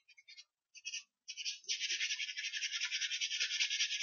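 Rapid back-and-forth coloring strokes of a drawing tool scratching on paper: a few short scratches, then a steady run of about ten strokes a second from a little before two seconds in.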